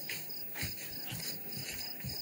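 Crickets chirping, a steady rapid train of short high chirps, with a few soft low thumps underneath.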